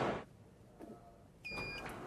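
A short, high electronic beep about one and a half seconds in, over a low background hiss: the beep of a hand-print scanner panel as a palm is laid on it.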